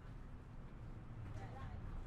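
Faint low rumble with light crackle, the quiet opening texture of a lofi track, with no instrument playing yet.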